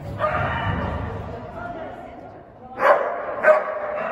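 A dog barking twice in quick succession, about three seconds in, the two barks loud and sharp.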